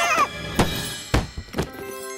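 Four short thunks, cartoon sound effects of a carry case being unlatched and its lid opened, followed near the end by a bright held chord as the case's contents sparkle. A character's wavering voice cuts off just at the start.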